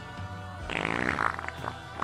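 Background music playing, with a loud raspy burst a little under a second in that lasts most of a second.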